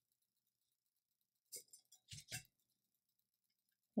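Near silence, with a few faint short clicks about halfway through as fingers twist and adjust metal purse hardware glued onto a stainless steel tumbler.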